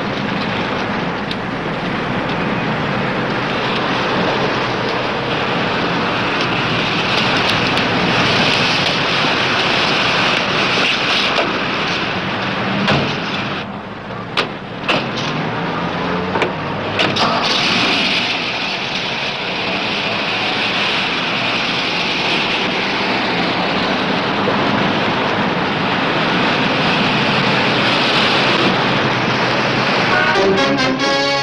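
1950s sedan engine running with steady road and engine noise. A few sharp clicks and thuds come in the middle as a car door opens and shuts.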